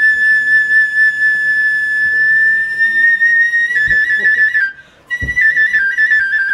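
Japanese bamboo transverse flute (kagura fue) playing a kagura melody: one long high note held for nearly four seconds that creeps slightly upward, then a quick wavering, ornamented passage. After a brief breath pause near five seconds in, a new phrase starts higher and steps down in small trills.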